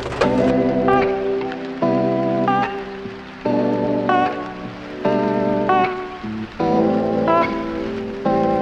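Background music: soft held chords that change about every second.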